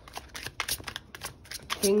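A tarot deck being shuffled by hand: a quick, irregular run of soft card clicks and riffles. A woman's voice starts near the end.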